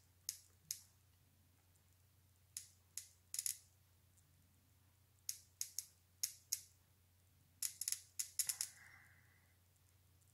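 Spark plugs on a bench-test dual CDI ignition with two coils, snapping as they are fired by hand: sharp, irregular clicks, some single and some in quick groups, with a run of several about three-quarters of the way in. They show the split ignition firing both coils.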